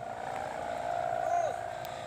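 A steady droning hum from a kite's bow hummer vibrating in the wind, holding one pitch, with faint distant voices briefly over it.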